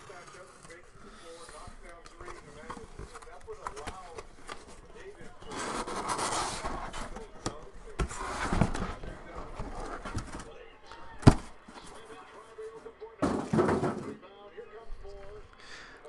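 A cardboard shipping case being handled and opened, with several rustling, scraping bursts of cardboard sliding and flaps moving, and one sharp knock past the middle.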